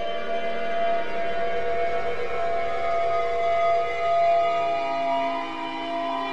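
Eerie sustained synthesizer drone: several steady held tones that change to new pitches near the end.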